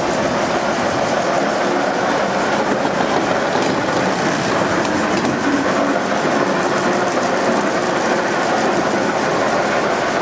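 Ruston & Hornsby diesel shunting locomotive running steadily as it moves slowly past on the rails.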